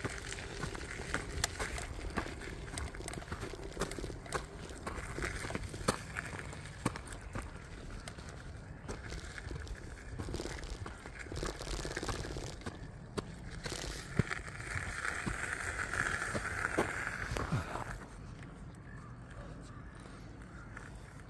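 Hiboy electric scooter rolling over a gravel track: a steady rough crunch of the small tyres on loose gravel, peppered with frequent sharp clicks and rattles. A higher hiss swells for a few seconds near the end, then the noise drops quieter.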